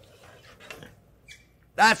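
Faint handling sounds of a metal roasting pan being lifted out of the oven, with a brief high squeak a little past halfway; a man starts speaking near the end.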